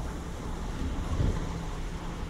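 Wind rumbling on the microphone over the low, steady running of a MAN lorry's diesel engine in the background.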